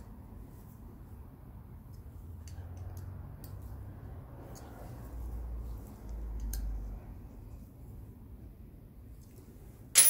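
Faint handling sounds as the screws holding the electronic ignition's circuit-board plate are tightened: scattered small clicks with a soft low rumble that swells in the middle and fades.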